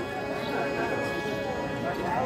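Low voices and chatter of performers and onlookers, with faint steady tones and light taps underneath.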